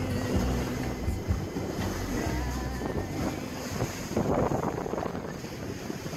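Music fades out over the first second or two, giving way to wind gusting on the microphone and water rushing past the hulls of a catamaran sailing on open sea.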